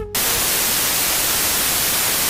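Steady white-noise static hiss, like a detuned TV, cutting in abruptly just after the music stops.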